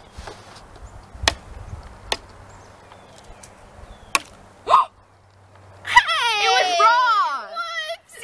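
An egg knocked against a head: two sharp knocks about a second apart, and another about four seconds in. Near the end, a girl's high-pitched laughter for about two seconds.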